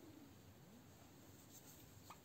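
Near silence, with the faint rubbing of a thread being drawn through fabric as needle lace is worked.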